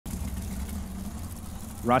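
Super Gas drag-racing cars idling at the starting line before staging: a steady low engine rumble.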